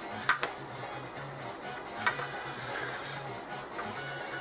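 A silicone basting brush stirring and dabbing in a small bowl of sauce, with a few light clicks against the bowl about a third of a second in and again around two seconds. Background music with a steady low pulse plays underneath.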